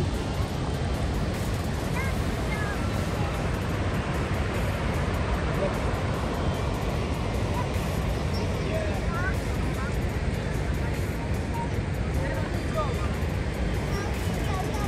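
Rushing water of the Rhine just above the Rhine Falls: a loud, steady rush with a deep rumble and no break. A few faint short chirps sound over it.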